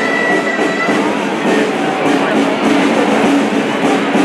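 Gralles (Catalan double-reed shawms) playing the tune that accompanies a walking human pillar, over steady crowd noise.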